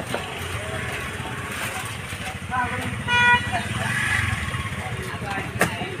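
Outdoor street background of low traffic rumble and faint voices, with a single short vehicle horn toot about halfway through.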